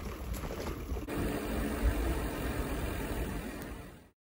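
Wind rumbling on an outdoor microphone, an uneven low haze with no clear tone, changing character at an edit cut about a second in and fading out at the very end.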